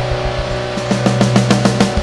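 Punk/post-hardcore band recording: distorted electric guitar holding a chord, with drums coming in a little under halfway through as rapid, evenly spaced hits.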